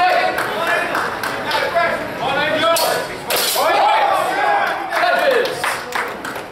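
Indistinct voices echoing in a large hall, with a few sharp clashes of steel training longswords during a fencing exchange.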